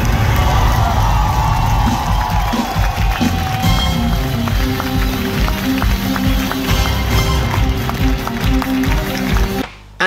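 Live theatre band playing upbeat curtain-call music with a heavy, steady beat, an audience cheering and clapping along. It cuts off abruptly just before the end.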